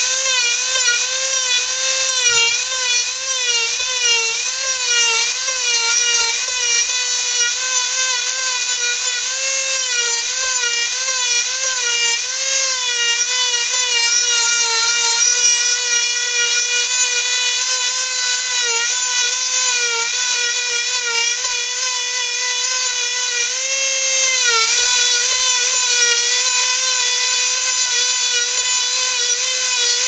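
Handheld Dremel rotary tool running at high speed with a steady whine, its pitch dipping and recovering again and again as the bit is pressed into the wood and eased off, with a deeper dip a few seconds before the end.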